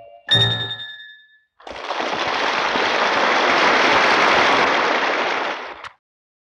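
The song on a 1961 mono LP ends on a final chord whose ringing, bell-like tones die away within about a second. After a brief silence comes a loud, even rushing noise of about four seconds, which cuts off abruptly.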